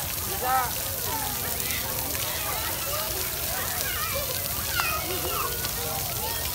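Steady splashing of a ground-level splash-pad fountain, its water jets spraying onto wet paving, with children's voices calling out over it at times.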